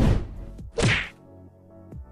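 Two whoosh-and-hit transition sound effects for an animated title card, the first at the very start and the second just under a second in. Faint background music follows.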